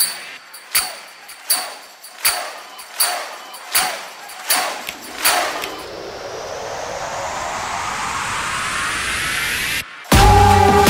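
Designed sound effects: seven sharp, evenly spaced clicks, about one every three quarters of a second, each with a short metallic ring. Then a whoosh that rises steadily in pitch and loudness and cuts off suddenly just before the end.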